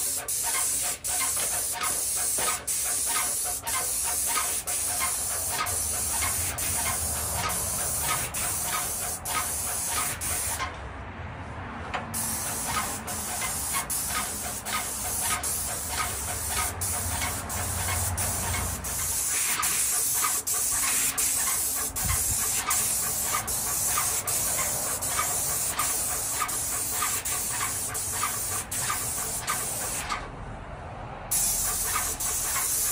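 Airless paint spray gun hissing steadily as it sprays paint onto a ceiling, with a regular pulse about twice a second. The spray stops for about a second around eleven seconds in, then resumes.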